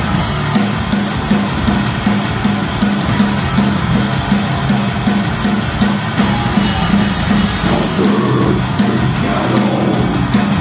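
Heavy metal band playing live and loud: distorted electric guitar, bass guitar and a drum kit.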